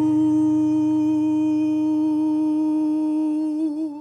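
A single long held vocal note, sung steadily over a low sustained tone, closing the song. The pitch wavers slightly near the end and the note then fades out.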